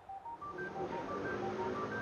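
Quiet electronic music bed: a quick rising figure of four short, pure-toned notes that repeats about every 0.7 seconds over a faint low sustained chord.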